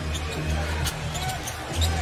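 Basketball dribbled on a hardwood court, a few sharp bounces over a steady low arena music bed and crowd noise.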